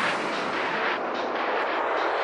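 Breakdown in a psytrance track: a filtered white-noise sweep with the kick drum and bassline dropped out, its top slowly closing down and darkening.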